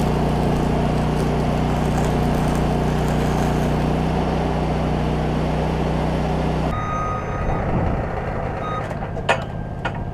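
Arc welding on a steel sign framework: a steady crackling hiss over a low, even motor drone, which cuts off abruptly about seven seconds in. After that it is quieter, with a few sharp clicks near the end.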